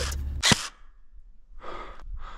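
A single sharp click about half a second in, then a short breathy exhale near the end: the camera-wearing player breathing hard.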